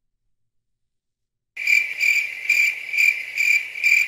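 Cricket chirping sound effect: a steady, pulsing chirp about three times a second that starts abruptly out of dead silence about a second and a half in.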